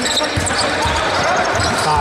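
A basketball dribbled on a hardwood court, several bounces, before a jump shot.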